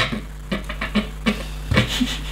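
Loose plastic Lego pieces clicking and clattering as a hand rummages through a pile of them, in a string of irregular sharp clicks.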